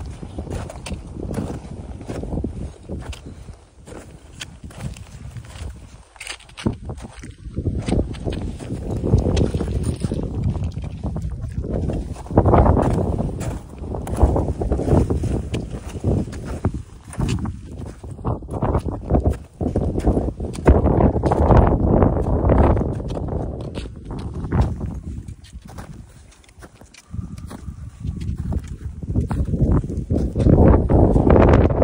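Wind buffeting the microphone in gusts that swell and fade, with footsteps crunching on snow.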